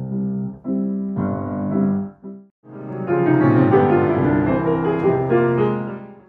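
Grand piano played: a few short waltz-pattern chords with the beat direction reversed, a brief pause about two and a half seconds in, then a fuller, louder passage that fades out at the end.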